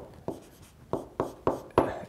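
Handwriting strokes on the screen of an interactive whiteboard: a quick, irregular run of sharp taps and short scratches as a word is written.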